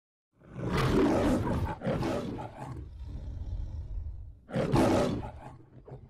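Lion roaring in the MGM studio logo: a loud roar about half a second in, a shorter follow-up, then lower growling and a second loud roar near the five-second mark that fades out.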